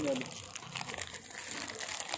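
Clear plastic bag crinkling and rustling in irregular crackles as hands squeeze and work a ball of fishing dough bait right by the microphone.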